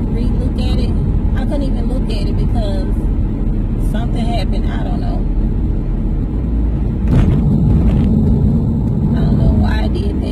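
Steady low rumble of a car driving, heard from inside the cabin, growing louder for a few seconds from about seven seconds in.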